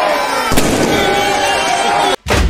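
A single loud firecracker bang about halfway through, from a burning effigy packed with firecrackers, over a crowd shouting and cheering.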